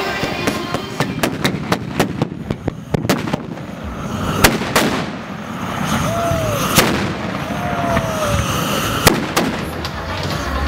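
Carbide cannons made from gas cylinders firing: a quick run of sharp bangs over the first three seconds, then three louder single bangs about four and a half, seven and nine seconds in.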